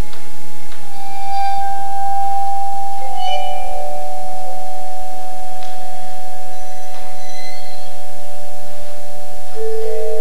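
Vibraphone played slowly with mallets: a few soft strokes, about a second in and again about three seconds in, whose notes are left ringing for several seconds, with fresh notes struck near the end.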